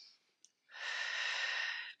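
A woman breathing audibly during a paced Pilates breath. The tail of a breath in fades at the start, then after a brief pause comes a long, clearly heard breath out lasting just over a second.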